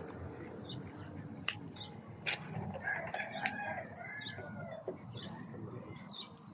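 A rooster crowing once, a drawn-out call starting a little under three seconds in, over a steady outdoor background murmur, with a few short sharp clicks around it.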